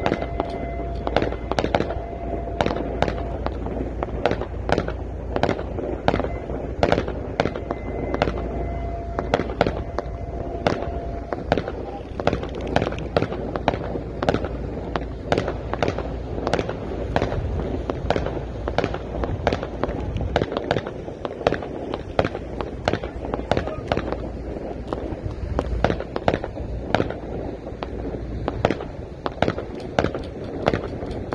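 Fireworks and firecrackers going off in quick succession, several sharp bangs and cracks a second without a break, over a steady low background of voices.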